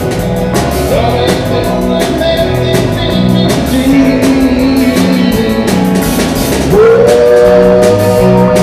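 Live rock band playing through amplifiers: electric guitars, bass guitar, keyboard and drum kit over a steady beat. Near the end a note slides up and is held.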